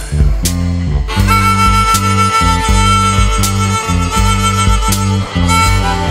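Instrumental break of a blues band: a repeating bass line and drums under a single long held lead note that starts about a second in and rings to near the end.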